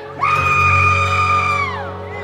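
A concert-goer lets out a long, high whoop, held steady for over a second and sliding down in pitch at the end, over the band's soft sustained chord.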